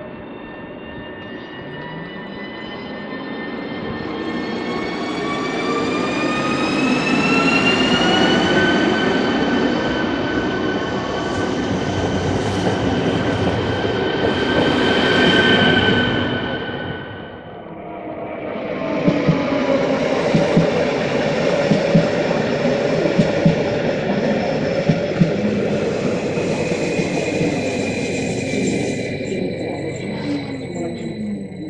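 A ČD electric multiple unit pulls away: its traction motors give a whine that climbs in pitch for several seconds, levels off, then fades as it leaves. About two-thirds of the way through, a LEO Express Stadler FLIRT electric unit runs in. Its wheels click over the rail joints over a motor whine, and the whine falls in pitch near the end as it slows.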